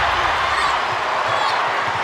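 Large arena crowd cheering as the home team gets a steal: a steady wash of many voices.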